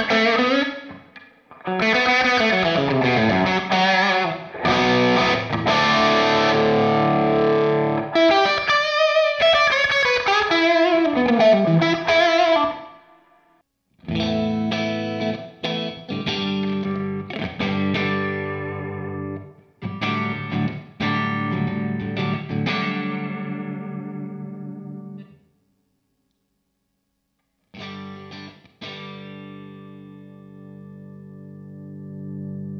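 Overdriven electric guitar through a Hudson Broadcast germanium preamp pedal into an Orange Rockerverb's clean channel. A lead line with slides up and down the neck is played on a single-cut guitar. After a short break, ringing chords are played on a Strat-style guitar; they stop suddenly, and a few more notes come near the end.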